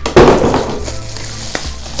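Bubble wrap crinkling and crackling in the hands as it is pulled off a camera body. It is loudest just after the start, then goes on more softly, with a single click about one and a half seconds in.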